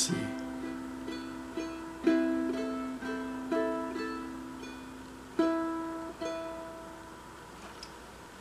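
Cordoba 30T all-solid mahogany tenor ukulele played fingerstyle: a slow line of single picked notes, about two a second, over a low note left ringing. The strongest notes come about two seconds in and five and a half seconds in, and the last notes fade away near the end.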